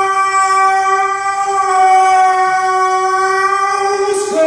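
A man's singing voice holding one long, steady high note, which gives way to a new phrase of changing notes right at the end.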